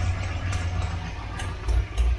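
Fuel-injected Ford V8 of a 1991 LTD Crown Victoria idling steadily at about 850 rpm, a deep low rumble, with a few light clicks near the end.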